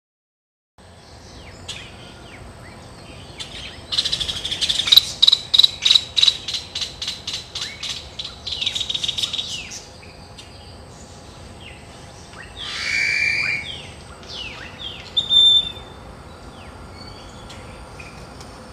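Birds calling: a fast run of sharp, high chirps, about five a second, for several seconds, then a few scattered single calls. Under them lie a faint steady hiss and a thin, steady, very high tone.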